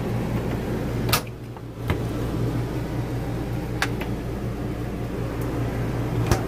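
A small RV refrigerator's door shutting with a click about a second in, followed by a few lighter clicks and knocks, over a steady low mechanical hum.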